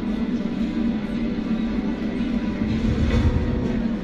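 Background music with a steady low drone.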